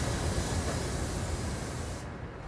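Steady outdoor background noise: an even rushing hiss with a low rumble underneath, easing off slightly near the end.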